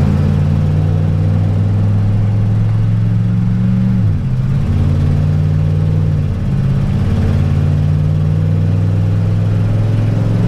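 1998 Damon Intruder motorhome's engine heard from inside the cab, pulling steadily as it accelerates onto the highway. Its pitch drops twice, about four seconds in and again a couple of seconds later, as the transmission shifts up. The engine runs smoothly on its new distributor.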